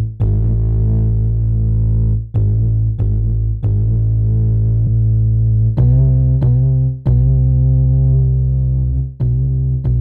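Bass line made from a sampled throat sound, played back from Logic Pro's Quick Sampler with a filter envelope that gives each note a sharper attack and ChromaGlow saturation on top. Held notes restart with a sharp attack at uneven intervals, and the line steps up in pitch about six seconds in.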